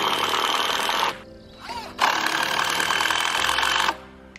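Cordless drill driving a screw into a log post, in two steady whining runs, the first about a second and a half long and the second about two seconds, with a short pause between.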